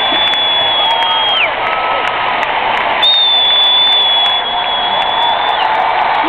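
Large concert crowd applauding and cheering, with scattered shouts. Two long, shrill whistles are each held steady for a couple of seconds before dropping in pitch: the first fades out about a second and a half in, and the second starts about halfway through.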